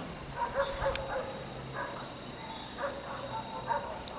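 Faint outdoor background with several short, scattered animal calls and a single sharp click about a second in.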